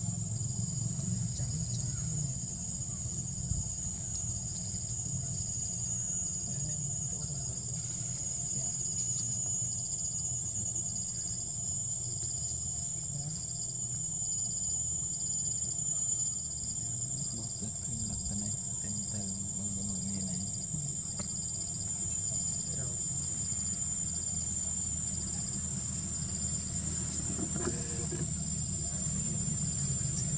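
Insects trilling steadily in the trees: one continuous high-pitched whine, with a softer pulsing trill a little lower, over a low background rumble.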